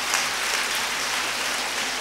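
Audience applauding: a steady patter of clapping, with no speech over it.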